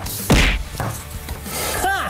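An edited impact sound effect: a sudden hit about a quarter second in that falls in pitch from a swish into a deep boom, over a background music bed, marking the reveal of the answers.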